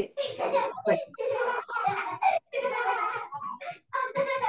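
Speech only: voices talking over a video call, not made out as words.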